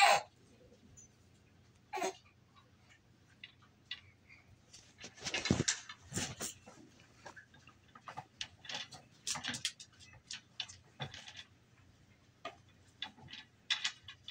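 Wooden beads and parts of a toddler's bead-maze activity cube clicking and knocking as a baby handles them: irregular clicks, with a louder knock about five seconds in and a quick run of clicks a few seconds later.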